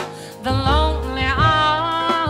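A woman singing a jazz song with held notes that slide upward in pitch, accompanied by grand piano.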